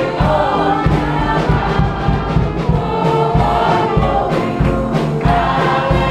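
Church choir singing a gospel song over instrumental backing with a steady bass beat.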